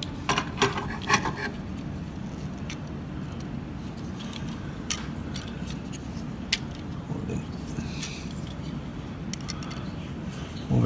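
Plastic parts of a Transformers Optimus Prime action figure clicking and rattling as they are moved during transformation: a quick cluster of small clicks in the first second or so, then scattered single clicks.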